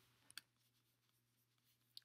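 Near silence: a faint steady low hum of room tone, with one faint click about a third of a second in as fingers handle the camera.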